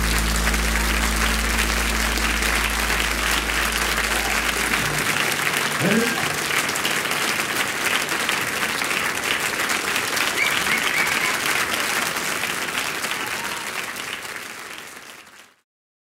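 Audience applauding at the end of a live song, with the band's last sustained chord ringing under it for the first few seconds before it stops. A voice rises briefly out of the crowd about six seconds in, and the applause fades away near the end.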